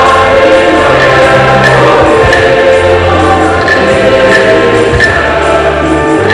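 A choir singing a church hymn with instrumental accompaniment, long held bass notes underneath.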